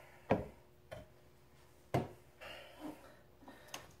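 Hand tools being handled on a wooden work board: four separate sharp clicks and knocks, the loudest about a third of a second in and about two seconds in. Yellow-handled wire strippers are laid down on the board and a soldering iron is picked up.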